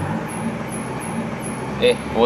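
Steady low background rumble, with a man's short spoken syllable near the end.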